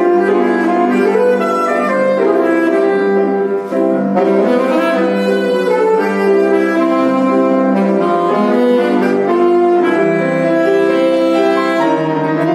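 Saxophone playing a concert étude with grand piano accompaniment: a melody of quickly changing notes over piano chords.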